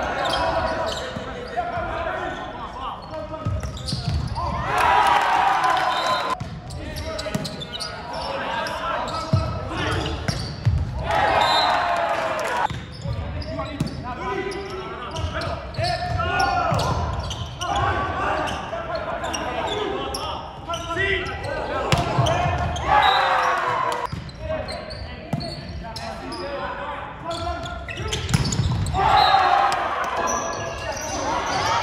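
Indoor volleyball play: players' voices calling and shouting on court, with repeated thumps of the ball being hit and landing on the hardwood floor.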